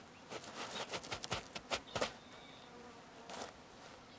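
Red kangaroo scraping at dry, crusted soil with its forepaws to dig a resting hollow: a quick run of scratching strokes in the first two seconds and one more near the end. Faint insect buzzing runs underneath.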